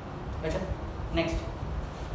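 A man speaks a brief word or two over a steady low background hum.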